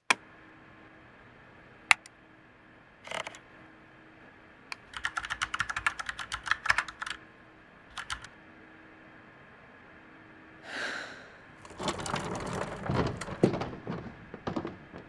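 Typing on a computer keyboard: a few single clicks, then a quick run of keystrokes about five seconds in and another, denser run near the end, over a faint steady hum.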